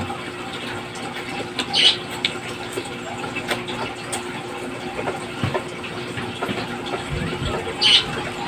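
Mouth sounds of people eating, chewing and smacking, over a steady background hum, with two short hissy sounds about two seconds in and just before the end.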